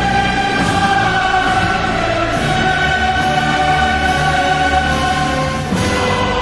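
Choral music: voices singing long held chords.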